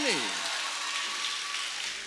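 Congregation applauding, an even patter of clapping that slowly fades.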